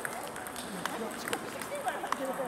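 Table tennis ball hits in a rally: four sharp clicks about half a second apart, as the celluloid ball strikes the bats and bounces on the table, over a background hum of voices.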